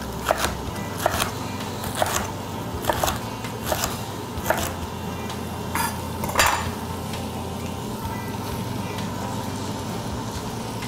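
Chef's knife chopping leeks on a cutting board, a sharp knock about every second, ending about six and a half seconds in. Under it is the steady sizzle of the first batch of leeks cooking in olive oil in the pot.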